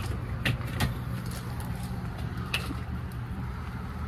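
A steady low mechanical hum, like a vehicle engine running nearby, with a few light clicks and knocks from handling the RV's pass-through storage compartment door and slide-out tray.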